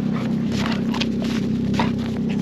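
A dog's paws crunching in packed snow as it trots up with a stick, a few crisp crunches over a steady low hum.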